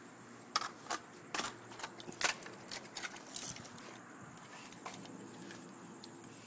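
Scattered light clicks and clatters of small hard objects, a rapid string of them in the first three and a half seconds, then only a few faint ticks.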